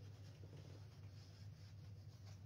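Near silence: a faint rustle of a cloth being wiped over the face, over a steady low hum.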